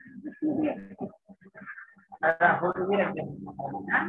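Indistinct voices over a video call, in short broken stretches that grow louder after about two seconds.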